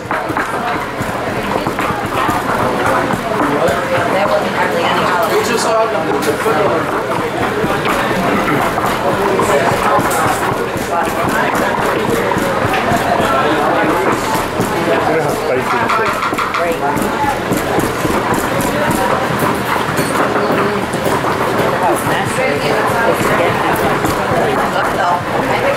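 Group chatter: several people talking at once, with a few light clicks and knocks.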